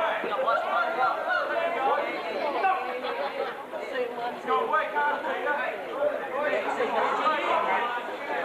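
Crowd of spectators talking and calling out all at once, many overlapping voices with no single one clear.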